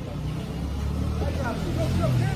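Street noise: a steady low rumble, with people's voices calling out from about a second in.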